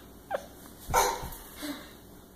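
A toddler's few short, high yelps, the loudest about a second in.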